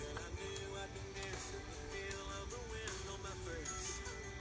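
Quiet background music with held notes that step from pitch to pitch.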